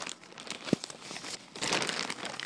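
Mailing package crinkling and tearing as it is pulled open by hand, with a sharp click under a second in and louder, denser crinkling near the end.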